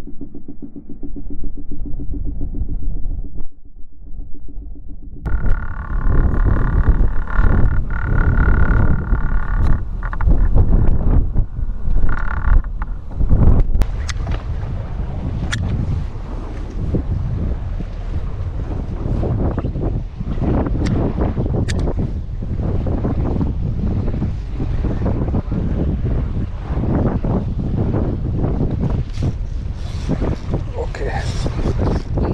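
Wind buffeting the microphone on a boat at sea, with a ragged, gusting low rumble of wind and water. Before this begins about five seconds in, a quieter, muffled low rumble. A few sharp ticks stand out.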